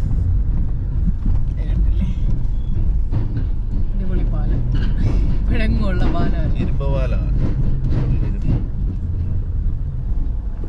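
Steady low rumble of a car's engine and tyres on the road, heard from inside the cabin while driving, with voices talking over it.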